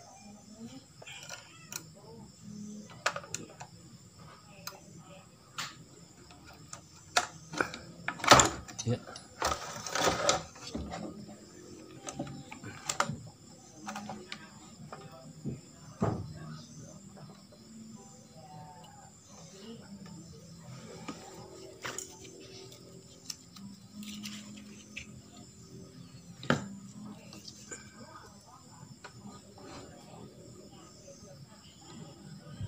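Scattered clicks, taps and rustles of hands working on a television's circuit board, fitting a new electrolytic capacitor and turning the board over. The loudest knocks come around eight to ten seconds in, with faint voices and music underneath.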